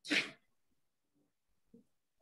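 A single short, breathy burst of air from a person close to the microphone, right at the start.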